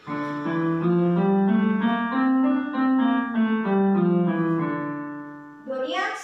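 Portable electronic keyboard played with a piano voice: a steady run of notes over lower notes, each note changing about every half second, the last ones fading away around five seconds in.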